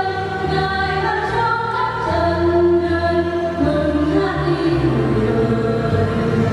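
Church choir singing a Vietnamese Easter hymn, voices moving through long held chords over a sustained low bass line.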